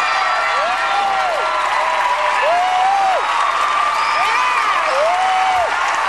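Studio audience applauding and cheering, with four long whoops that rise and fall in pitch, about a second and a half apart.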